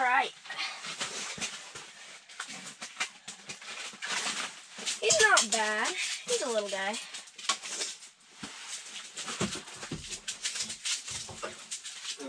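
Clicks and rustles of a small rainbow trout being handled and unhooked over an ice-fishing hole, with two short, drawn-out whine-like vocal sounds in the middle.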